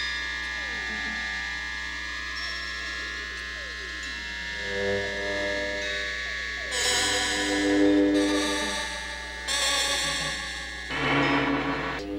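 Synthesizer horror-film score: sustained electronic tones, one of them dipping and then sliding steadily upward over the first few seconds. Lower sustained chords join about halfway through and swell louder twice toward the end.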